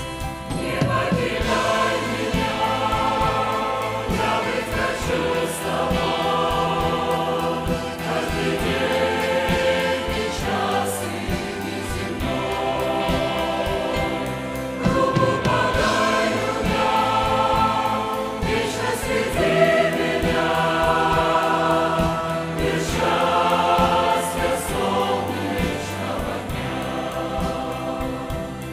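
Large mixed choir of men and women singing a Christian hymn, many voices together at a steady, full level.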